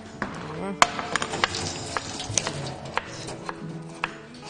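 Background music with about eight irregular, sharp knocks of a knife on a cutting board mixed with light kitchen clatter.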